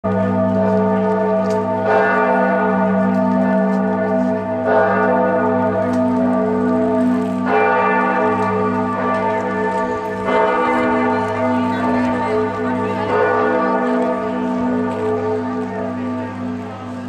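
A large church bell in Giotto's Campanile tolling slowly, struck about every three seconds, with each strike ringing on and overlapping the next.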